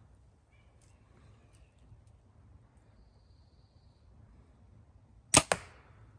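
A compound bow being shot: after several seconds of quiet at full draw, one sharp, loud crack of the string and limbs on release about five seconds in, followed a split second later by a second, weaker smack.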